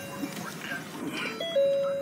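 Car's electronic chime: a pure tone at the start, then about a second and a half in a short higher note stepping down to a lower held note.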